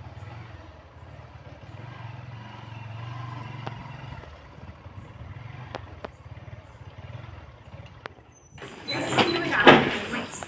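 A small motorcycle or scooter engine running with a steady low hum, with a few light clicks. Near the end it gives way suddenly to louder voices and knocks.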